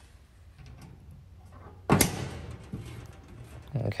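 A plastic push pin pressed into a hole in the grill cabinet's sheet-metal side panel, snapping home with one sharp click about halfway through. Faint handling rustle comes before it.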